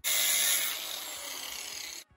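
Power tool grinding through a steel roll pin held in a vise, cutting it to length: a loud, high hissing grind that starts suddenly, eases slightly after about half a second, and cuts off abruptly.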